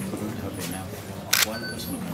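Indistinct murmur of voices in a room, with one sharp click about two-thirds of the way through.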